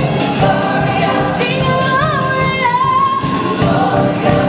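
Gospel choir singing with a live band of drum kit, electric bass, electric guitar and keyboard. A woman sings lead into a handheld microphone over the choir, holding long notes that waver and slide in pitch, while the drums keep a steady beat.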